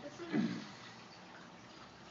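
A short vocal sound from a person about half a second in, such as a murmur or brief laugh, then only faint steady background noise.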